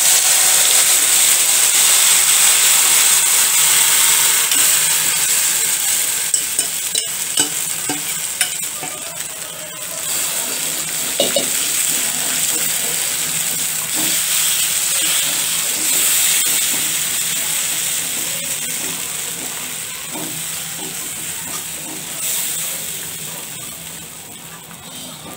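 Gram-flour and coriander batter sizzling as it is poured into hot oil with cumin seeds in a metal kadhai, then stirred round the pan with a wire whisk. The loud hiss is strongest at the start and slowly dies away.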